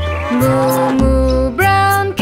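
A cow's moo, one long low call of about a second, over a children's song backing track with a steady bass line; near the end a voice starts singing.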